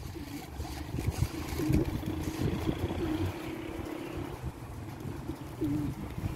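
Domestic pigeons cooing: several low coos in a row, one drawn out for about a second midway, over a low steady rumble.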